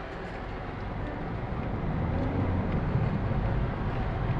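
Engine and road noise inside a Peugeot car's cabin while it drives in city traffic, growing louder over the few seconds with a faint rise in engine pitch about halfway through.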